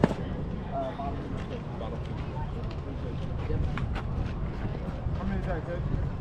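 Ball-field sounds: distant players' and spectators' voices over a steady low rumble, with one sharp smack right at the start and a few faint clicks later.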